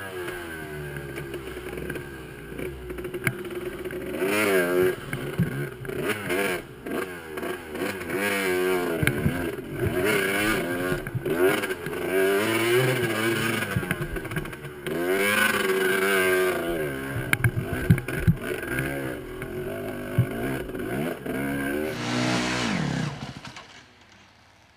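Dirt bike engine revving up and down over and over as it climbs a rocky, rutted trail, with occasional sharp knocks; the engine winds down and the sound stops suddenly near the end.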